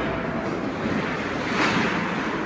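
Ice hockey game: skate blades scraping and carving on the ice under a steady wash of rink noise, with a brief louder swell near the end.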